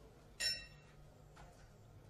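Boxing round bell struck once about half a second in, a single bright metallic ding that rings briefly and fades: the signal for the start of round three.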